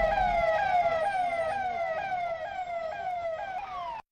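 Electronic siren on a police convoy vehicle, sounding a quick downward sweep that repeats about twice a second and grows fainter. It cuts off abruptly at the end.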